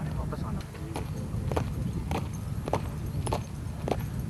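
Hard-soled boots striking a paved parade ground in marching step, a sharp heel strike about every 0.6 s, over a steady low background rumble.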